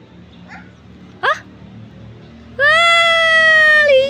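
A high-pitched voice gives a short rising whoop about a second in, then a long, loud, held squeal that sags slightly in pitch near the end, as the child rides down the spiral slide.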